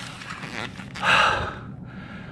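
A man's single loud, gasping breath about a second in, unpitched and hissy. It is the hard breathing of exhaustion after a strenuous suspension-strap workout.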